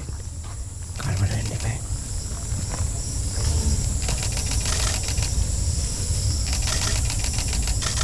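Field sound of wild Asian elephants moving through scrub along a dirt track: brush and twigs crackling in quick clicks over a steady low rumble, with a steady high-pitched insect drone.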